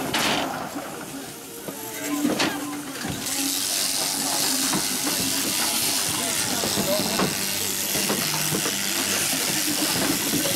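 Sheep-shearing handpiece running on a Merino ewe being wigged and crutched, a steady hiss that starts about three seconds in. It follows a couple of sharp knocks.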